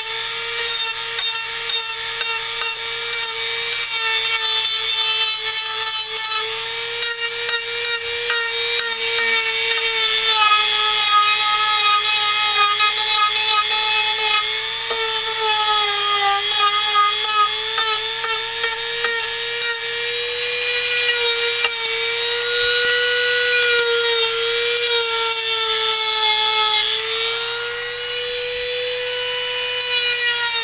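Handheld rotary tool with a sanding drum running at high speed and sanding carved wood: a steady high-pitched whine with a gritty rubbing noise, its pitch sagging and recovering slightly as the drum is pressed against the wood.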